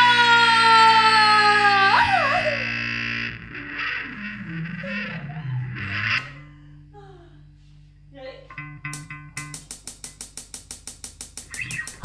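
Distorted bass guitar holding a last note that slides down in pitch, then dies away to leave steady amplifier hum. Near the end a fast, evenly repeating electronic pulse starts up.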